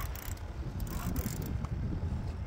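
Wind buffeting the phone's microphone as a low, uneven rumble, with a few faint knocks from the phone being handled.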